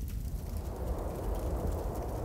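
Sound effect of a forest fire burning: a low, grainy noise of flames that swells about a second in, over a steady low hum.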